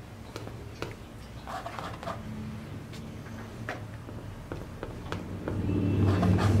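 Oil-paint brush dabbing and stroking on a stretched canvas: scattered soft taps, several a few seconds apart, over a low steady hum.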